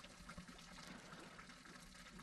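Near silence: a faint, steady trickle of running water from a memorial drinking fountain.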